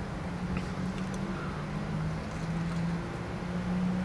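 Steady low hum inside a van's cab, typical of an idling engine and climate fan, with a couple of faint ticks as a cigar is drawn on.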